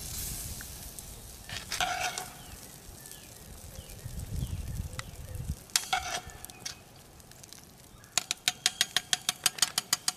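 A metal spatula stirring and scraping thick chili in a cast iron Dutch oven, with a scrape about two seconds in and another near the middle. Near the end comes a quick run of about a dozen sharp metallic taps on the pot, each with a short ring of the iron.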